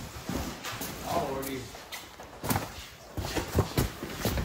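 Flattened cardboard boxes being picked up and stacked: scattered knocks, slaps and scrapes of cardboard sheets, with a voice speaking briefly about a second in.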